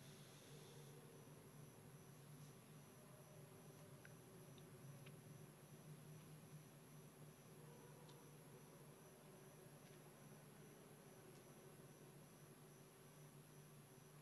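Near silence: room tone with a faint steady hum and a few faint scattered clicks.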